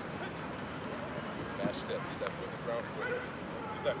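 Distant voices on a football practice field: a quick run of short shouted calls in the second half.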